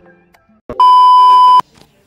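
A loud, steady, high electronic beep lasting just under a second, starting and stopping abruptly, just after a short click.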